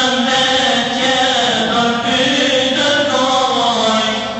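A man chanting a devotional mevlud hymn, singing long, melismatic held notes whose pitch slides slowly from one to the next, without a break.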